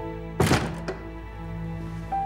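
A wooden door shut with a loud thunk about half a second in, followed by a smaller click, over background music.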